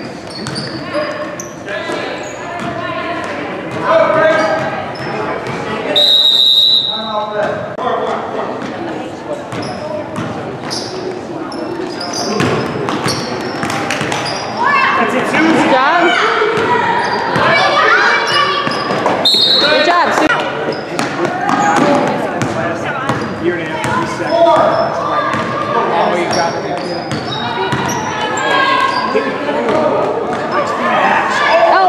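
Basketball being dribbled on a wooden gym floor, with players and spectators calling out and the sound echoing around the large hall. A shrill whistle blows once for about a second, six seconds in, and briefly again about two-thirds of the way through.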